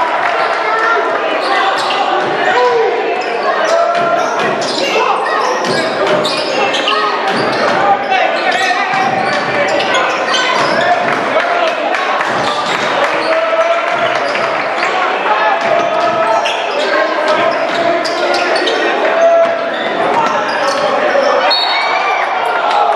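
Indoor basketball game sound in a large gym: a basketball bouncing on the hardwood court amid the steady chatter and calls of many spectators and players, echoing in the hall.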